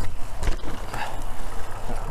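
Mountain bike rolling off a small drop on a dirt trail, a steady rumble with a thump as the wheels land about half a second in.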